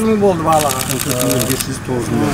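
A man speaking, with a fast, even ticking clatter faint behind his voice in the first half.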